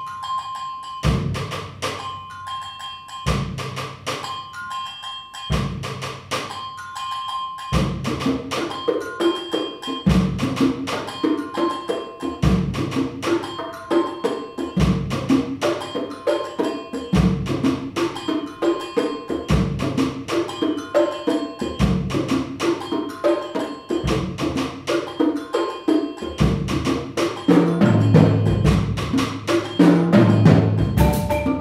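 Live percussion ensemble playing a pop-minimalist, rock-style groove: a fast, even ticking pattern over a low drum beat about once a second. About eight seconds in, a busier layer of repeating pitched notes joins, and the low drums grow louder near the end.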